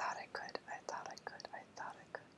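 A woman whispering softly, a string of breathy unvoiced syllables.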